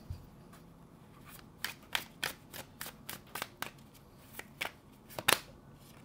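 Tarot cards being handled: an irregular run of light card snaps and flicks, the loudest one near the end.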